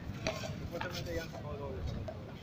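A few light taps of a frontón ball on a concrete court, much softer than the paddle hits just before, with shoes scuffing on the concrete and faint voices behind.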